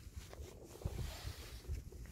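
Faint, uneven low rumble of wind buffeting the microphone.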